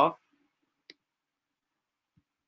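A man's spoken word trailing off, then dead silence broken by one faint, short click about a second in.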